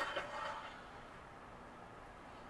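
Near silence: a faint, brief trailing sound in the first half second, then a low steady hiss of room tone.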